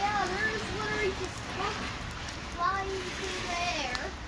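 Quiet, indistinct talking voices in short stretches over a low, even background hiss.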